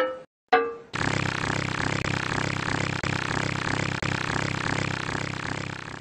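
An edited meme sound effect: two short pitched blasts, then a loud buzzing, rapidly pulsing sound that restarts abruptly every two seconds like a loop.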